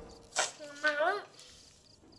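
A short wordless voice sound, a hum whose pitch dips and rises, about a second in, just after a soft click.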